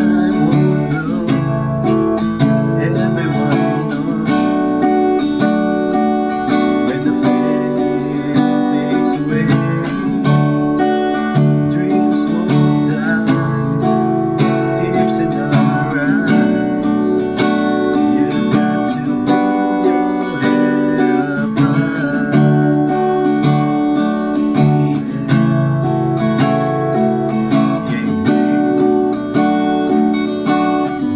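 Acoustic guitar, capoed at the second fret, strummed steadily in a down-up pattern through a repeating loop of open chords: C, G, Am7, Fmaj7, G.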